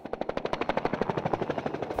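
Helicopter rotor blades beating in a fast, even pulse of about a dozen beats a second as the helicopter flies low overhead.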